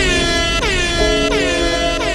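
Intro of a sped-up hip-hop track: an air-horn effect sounds about three times, each blast dropping in pitch, over held synth notes and deep bass.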